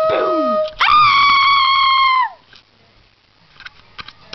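A young woman's voice letting out long held cries: one held note that stops just under a second in, overlapped by a falling cry, then a higher held cry of about a second and a half that bends down and cuts off. Faint knocks and handling sounds follow.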